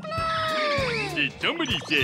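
A high, cartoon-like voice drawing out one long, slowly falling cry, followed by short high squeaks, over children's music.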